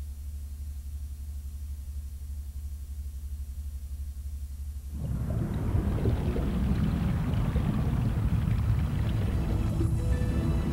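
A low steady hum, then about halfway through a deep rumbling underwater ambience from a film soundtrack starts and carries on.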